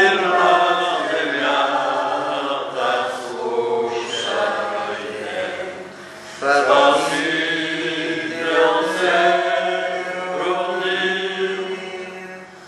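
Congregation singing a hymn in long sung phrases, with a brief break about six seconds in.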